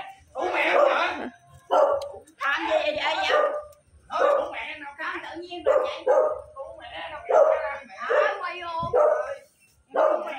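Raised voices shouting in a heated family argument, coming in short agitated outbursts with brief pauses between them.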